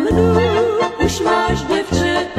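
Central European folk music: a wavering lead melody line over a steady, rhythmic bass accompaniment.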